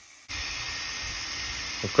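Steady hiss of water jetting out of a garden-hose-driven micro hydro generator, cutting in suddenly about a quarter second in after a moment of silence.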